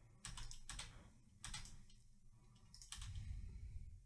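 Faint clicking of a computer keyboard and mouse, in three short clusters of quick clicks.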